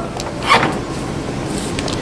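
Handling noise from a handheld camcorder being swung and carried, with faint knocks over a steady background hum; a brief louder rustle comes about half a second in.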